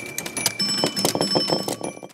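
Animated logo sting: bright, bell-like tones ringing steadily over a rapid run of small clicks.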